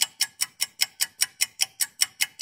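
A clock-ticking sound effect: sharp, even ticks about five a second.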